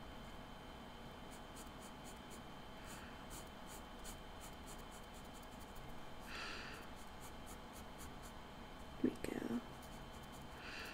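Faint scratching of a Copic marker's tip stroking back and forth over sketchbook paper, in many small quick strokes.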